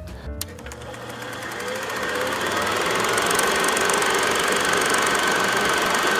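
Film projector running, a rapid, even mechanical clatter that swells up over the first two seconds or so and then holds steady.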